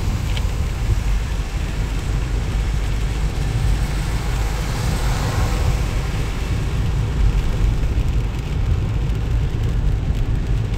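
Car driving on a wet road, heard from inside the cabin: a steady low rumble with a hiss of tyres on water.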